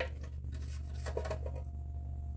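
Long, thin Phillips screwdriver turning out a small 4-40 cover screw: several light clicks and scratches of the tip in the screw head, over a steady low hum.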